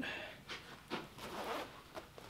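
Sitka Fanatic hunting jacket being zipped and adjusted by hand: a few short bursts of soft fabric rustling and zipper noise.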